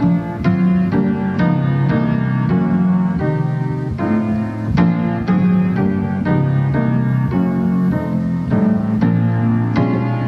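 Grand piano played solo, a flowing run of struck chords and melody notes, close-miked by a microphone set on the piano.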